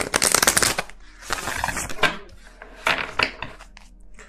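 A deck of tarot cards being shuffled: a fast fluttering run of card clicks for most of the first second, then softer rustling and a few separate flicks of the cards.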